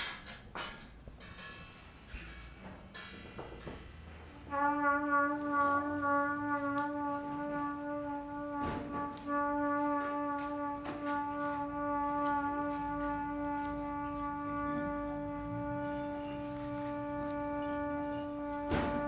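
Trumpet holding one long, steady note from about four and a half seconds in to the end. Before it come a few light knocks with faint metallic ringing, and scattered taps sound over the held note.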